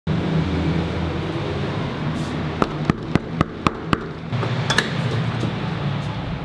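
Knocking on an apartment front door: six quick, evenly spaced knocks about four a second, then a couple of clicks as the latch is opened, over a steady low hum.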